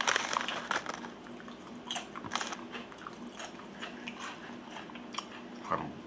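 Close-up chewing of crunchy potato chips, with scattered sharp crackles as they break between the teeth.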